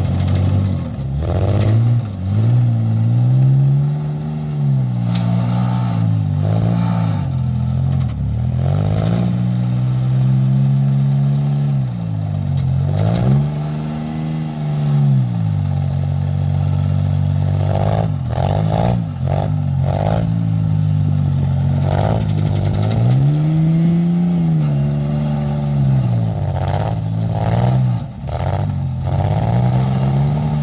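Engine of a screw-propelled (auger) vehicle running as it drives, its pitch dropping and rising again every few seconds as the throttle and load change, with short bursts of clattering.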